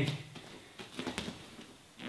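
A few soft taps and light thuds of bare feet stepping and landing on a rubber training mat as a knee strike is thrown and the leg brought back, most of them about a second in.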